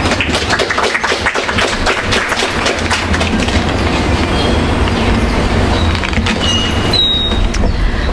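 Audience clapping, a dense patter of claps that thins out in the second half, over a steady low rumble.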